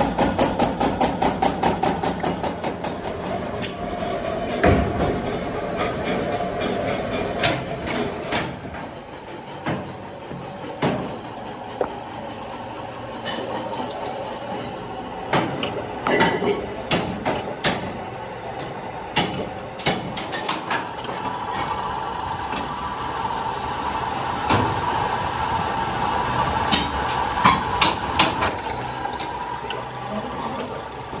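Pillar drill press machining cast-iron pump bodies: a steady machine hum broken by sharp metallic knocks and clanks as the castings are handled and cut. A quick, regular run of knocks fills the first few seconds.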